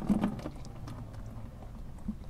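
Warm motor oil pouring from the open drain plug of a Honda Gold Wing GL1800 engine and splashing into a plastic bucket, with a short burst of handling noise at the start.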